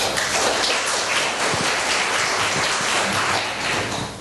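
Audience applauding: many hands clapping together, starting suddenly and holding steady.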